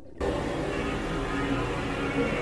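Steady background rumble with a low hum inside an enclosed Ferris wheel gondola, starting after a brief dropout just at the start; no distinct event stands out.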